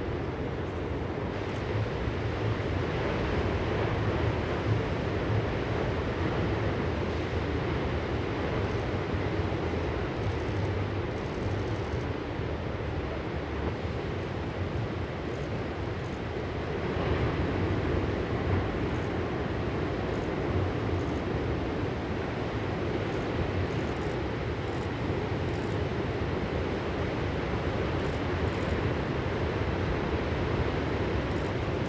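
Steady roar of large ocean waves breaking, swelling slightly about halfway through.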